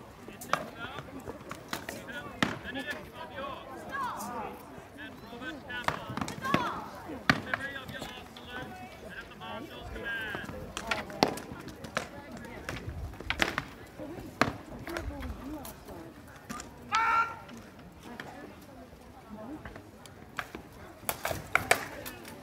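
Rattan weapons striking armour and shields in an SCA armoured combat bout: irregular sharp knocks throughout, over a bed of spectator chatter. A short loud voice stands out about three-quarters of the way through.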